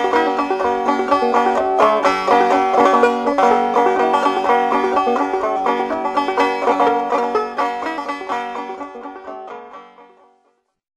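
Old-time banjo tune, quick plucked notes, fading out over the last three seconds.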